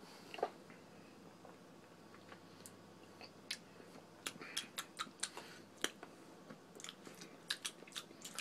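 Faint mouth sounds of people tasting a vegetable juice: lip smacks and tongue clicks, a scatter of short sharp clicks that come thicker in the second half.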